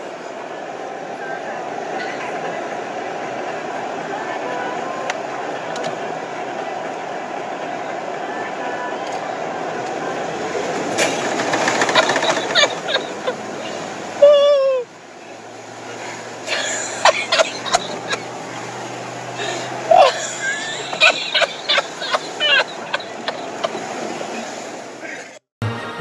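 Land Rover Discovery's engine and cabin noise heard from inside the car as it pushes another car, the noise building steadily over about twelve seconds. Then comes a brief loud voice falling in pitch, followed by a run of sharp clicks and knocks.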